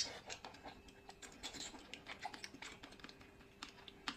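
A person biting into and chewing glazed braised pork belly: a sharp click at the start as the bite is taken, then a run of irregular wet mouth clicks and smacks.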